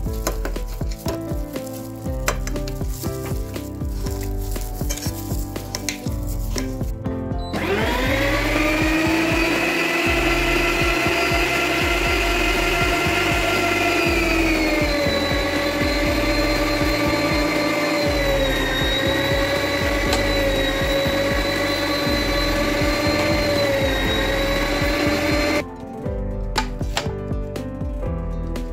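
Electric meat grinder motor starting with a quick rising whine and running steadily, its pitch sinking a little once chicken is fed through and minced, then cutting off suddenly near the end. Before it starts, knife strokes cut a potato against a plate.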